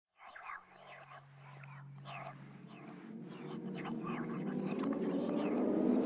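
Whispered voice over a low steady drone, with a swell that grows steadily louder toward the end.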